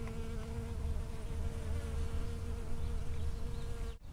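Honeybee flying close to the microphone: a steady, even wingbeat buzz that cuts off abruptly at the end.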